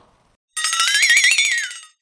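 A short electronic cartoon sound effect for the scene transition: one buzzy, warbling tone that rises, wobbles and falls back, lasting about a second and a half.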